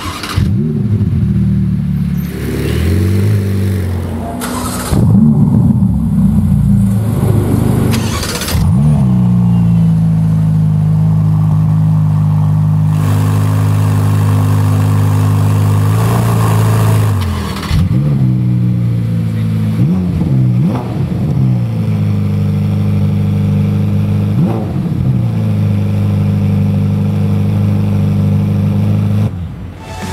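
Ferrari F8 twin-turbo 3.9-litre V8s starting up in a series of clips: rev flares as they fire, then a steady high idle broken by short throttle blips.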